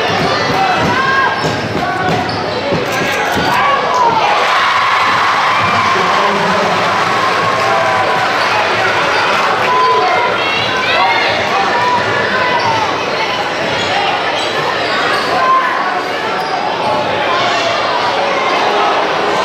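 A basketball dribbled on a hardwood gym floor, over the steady chatter and calls of a crowd of spectators in a gym.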